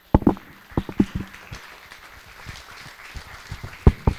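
A few irregular sharp clicks and knocks over low, steady room noise. The loudest pair comes near the end.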